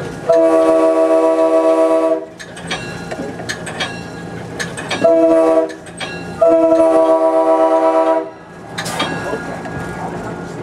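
Budd RDC railcar's Nathan K5L five-chime air horn sounding for a grade crossing: a long blast, a short one, then another long one, heard loud from inside the cab. Between the blasts the wheels click over rail joints.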